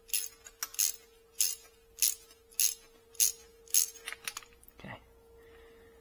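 Hand socket ratchet clicking in short metallic rasps, a little under two a second, as it is swung back and forth to undo an exhaust header flange nut on a BMW R nineT boxer engine; the rasps stop about four and a half seconds in.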